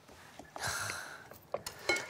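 A spatula stirring dry red chili powder in a glass bowl, a soft gritty scraping for about a second, then a few light clicks near the end.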